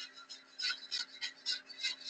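Felt-tip marker scratching across paper as a word is handwritten: a run of short strokes, about three a second.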